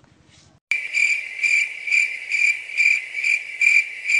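Cricket chirping, a steady high trill pulsing about twice a second, starting abruptly a little under a second in. It is used as a comedy sound effect over a silent pause.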